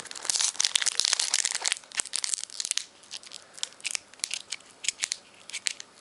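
Foil wrapper of a Pokémon trading-card booster pack being torn open by hand. There is a dense stretch of tearing and crinkling for the first couple of seconds, then scattered crinkles and crackles as the wrapper is pulled apart.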